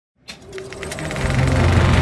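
Film projector starting up: a click, then a clatter of mechanism clicks that quickens as it gets going, with a low steady drone rising beneath it from about a second in.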